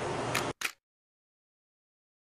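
Faint steady room hiss with a click, cut off about half a second in by a brief burst of noise, then complete silence for the rest.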